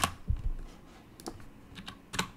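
A few scattered keystrokes on a computer keyboard, sharp separate clicks rather than a steady run of typing, with a soft low thud about a third of a second in.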